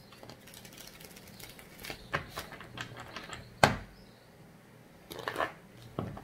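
A tarot deck being shuffled by hand: a run of light card clicks and rustles, with one sharp tap a little past halfway.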